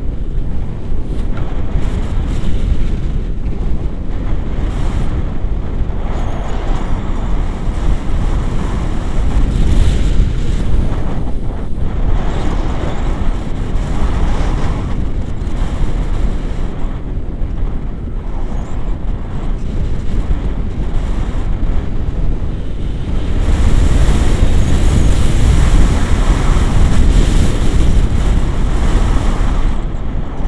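Wind noise from the airflow over the camera's microphone in flight on a tandem paraglider: a loud, steady buffeting noise with no speech. It grows louder for the last six seconds or so.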